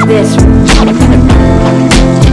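Soundtrack music with a steady beat of sharp percussion hits over sustained pitched notes.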